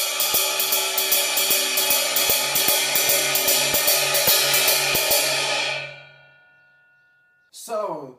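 Ride cymbal on an acoustic drum kit played with a stick in a steady blues shuffle pattern, then left to ring out and fade over the last two seconds.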